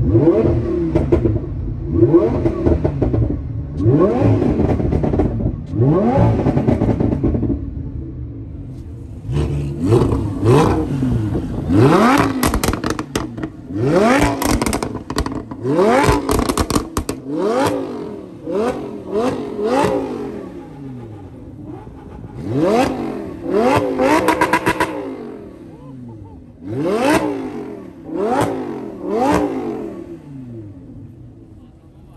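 Lamborghini Huracán's V10 engine revved hard again and again while standing still, each blip of the throttle rising sharply and falling back. From about nine seconds in, each drop in revs is followed by a rattle of crackles and pops from the exhaust.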